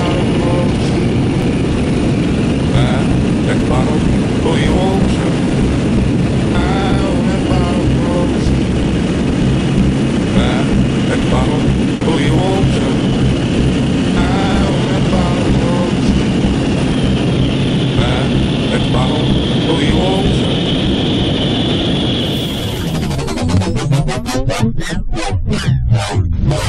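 Propeller aircraft engine droning steadily, heard from inside the cabin of a small jump plane, with voices over it. About four seconds before the end the engine noise cuts off and gives way to a quick run of swishing sweeps.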